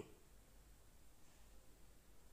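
Near silence: a pause between spoken quiz questions, with only a faint low hum.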